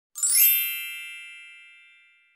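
A bright, ringing chime sound effect: a single sparkling strike, fading slowly away over about two seconds.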